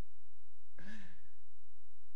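A man's short breath out, a sigh, about a second in, over a steady low hum.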